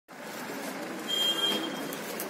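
Steady noise of road vehicles, with a brief thin high tone in the middle.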